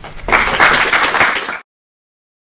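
Audience applauding, cut off abruptly about a second and a half in.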